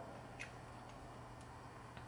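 Quiet room tone with a faint steady hum and a few faint small clicks, the clearest about half a second in.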